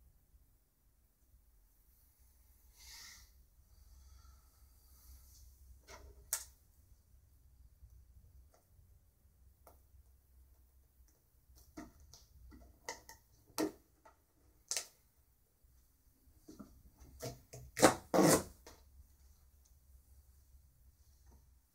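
Scattered light knocks and clicks from hands handling the canvas and things on the work table, sparse at first and more frequent in the second half, with the loudest cluster near the end.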